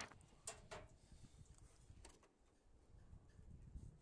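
Near silence, with two faint short clicks about half a second in.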